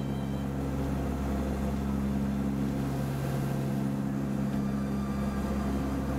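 Steady, even drone of the NASA P-3B's four turboprop engines, heard from inside the cabin: a low hum with a few constant pitches over a wash of noise.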